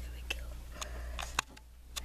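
Handling noise close to a handheld camera's microphone: soft rustling of fabric with a few sharp clicks, over a steady low hum. It goes quieter for a moment near the end.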